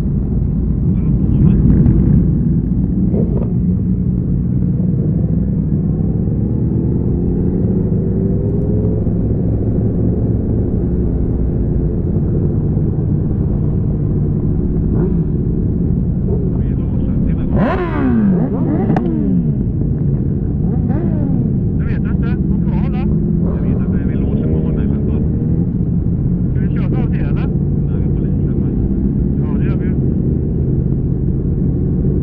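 Motorcycle engines during a group ride, heard from the rider's bike: a steady engine note that rises and falls with throttle and gear changes. About 18 seconds in come several sharp revs, quickly up and down, from bikes close by.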